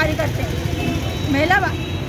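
A woman speaking in Hindi, pausing for about a second, over a steady low background rumble.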